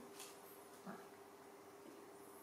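Near silence: faint room tone with a steady low hum, broken in the first half second by a faint click and a short, very high squeak.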